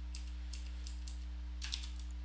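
A few light, scattered keystrokes on a computer keyboard, typed while working in the vim editor.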